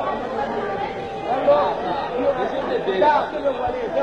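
Indistinct chatter: several people talking over one another, with no instrument playing.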